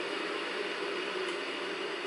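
Electric kettle heating water toward the boil: a steady, loud hiss.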